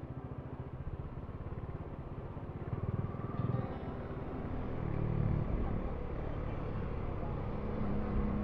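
Kawasaki Dominar 400's single-cylinder engine running at low road speed, a steady low pulsing rumble that swells a little about three and five seconds in.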